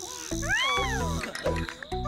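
Cartoon background music with bass notes about twice a second, over which a cartoon character gives a wordless, cat-like 'ooh' that rises and falls in pitch about half a second in.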